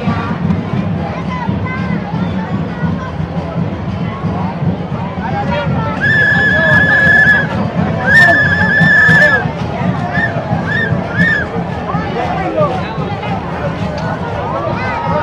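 Street conga procession: crowd noise and conga music. About six and eight seconds in, two long high-pitched blasts sound over it, followed by three short toots.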